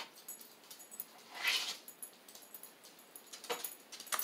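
Loose beads clicking and rattling faintly on a paper plate as fingers pick through them, with a short soft breathy swell about a second and a half in.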